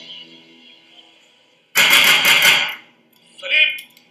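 A held musical chord fading away, then about a second of rapid gunfire, several shots in quick succession, with a short shout after it.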